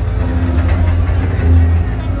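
Loud bass-heavy music from a carnival float's sound system, mixed with a steady low engine rumble from the float's vehicle.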